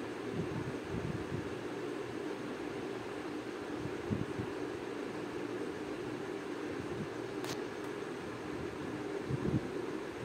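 Chopped green beans frying in hot oil in a steel pan: a steady sizzle, with a few soft knocks and a sharp click about seven and a half seconds in.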